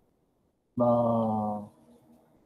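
A man's voice drawing out the syllable "na" on one steady pitch for about a second, starting about three-quarters of a second in: a held filler sound while he works out a figure.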